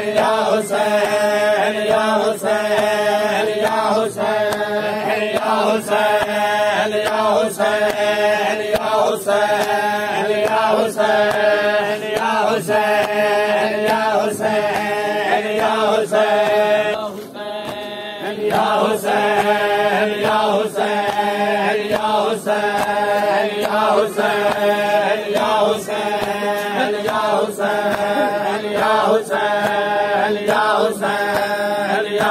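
A Shia noha recited over a microphone and chanted by a crowd of mourners, with rhythmic matam chest-beating slaps at a steady pace of a little under one a second. The voices drop briefly a little past halfway, then resume.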